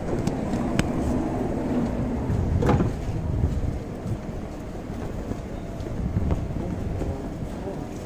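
Steady low rumble of an NS Sprinter electric stopping train standing at the platform with its doors open, with station noise and background voices; a few sharp clicks and knocks stand out, one louder about two and a half seconds in.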